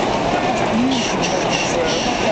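Fireworks going off in a continuous, dense barrage of bangs and crackle, with a crowd's voices mixed in.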